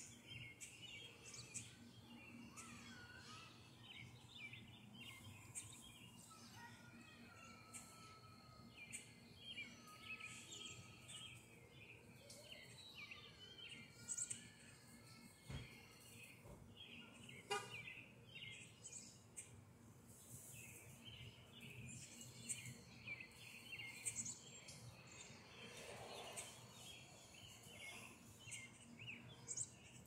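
Faint outdoor chorus of small birds chirping and calling over a low steady background hum, with a couple of sharp ticks midway.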